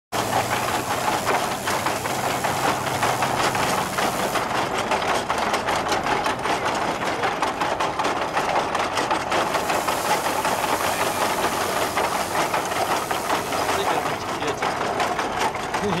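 Small grain thresher belt-driven by a horse treadmill, running with a steady, dense mechanical clatter and whir as wheat bundles are fed into its cylinder.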